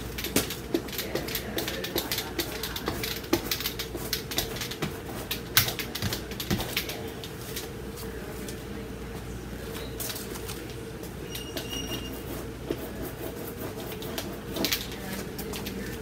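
Dry paintbrush scratching and dabbing against a rough, textured acrylic canvas: a run of short, scratchy strokes, thinning out after about seven seconds, over a steady low hum.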